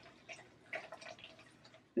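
Spatula stirring chopped scallions into a thick guacamole in a plastic food processor bowl: faint soft scrapes and a few light ticks.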